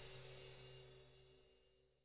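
Closing background music fading out to silence, the last of it a few held notes.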